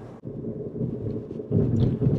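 Low steady rumble of car road and engine noise heard from inside the moving car, growing louder about one and a half seconds in.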